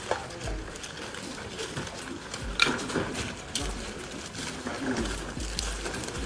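Indistinct voices of several people talking and calling out, with a few sharp clicks and low rumbles on the microphone.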